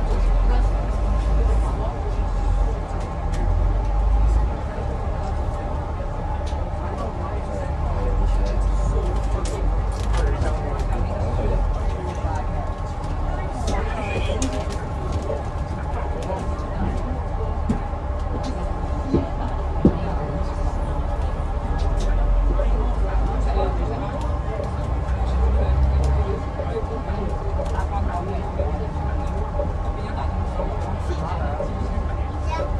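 Interior ride noise on the lower deck of an Alexander Dennis Enviro500EV battery-electric double-decker bus in slow traffic: a steady hum with low road rumble that swells and eases, and faint passenger chatter in the background.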